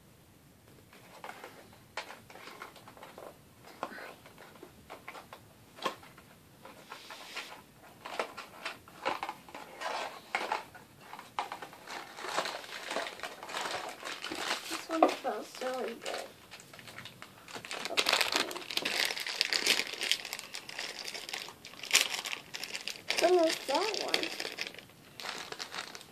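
Packaging of a blind-box vinyl figure being opened by hand, crinkling and tearing in irregular bursts that grow busier and are loudest about two-thirds of the way in.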